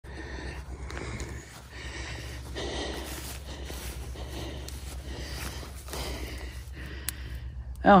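Footsteps swishing through tall dry grass with breathing close to the microphone, over a steady low rumble.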